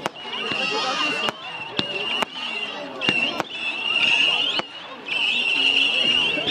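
An aerial fireworks display: about seven sharp bangs and cracks of bursting shells, spaced unevenly, over a high-pitched wavering shriek that comes and goes.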